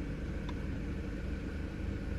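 Supercharged four-cylinder engine of a 2004 Mercedes C230 Kompressor idling steadily, heard from inside the cabin as a low hum. One faint click comes about a quarter of the way in.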